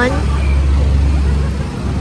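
Steady low rumble of street traffic, cars passing on a city road.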